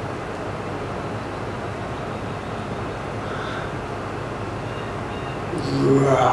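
Steady, even background noise of an indoor room, a hiss with a low hum, with no ball strikes or other sudden sounds.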